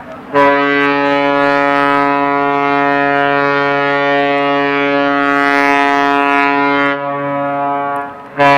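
The horn of the tug-barge Victory/Maumee sounds one long, steady, buzzing blast of about seven seconds, starting about half a second in and stopping just before the end. A short blast follows right after, so this is the opening long blast of a long-short-long salute.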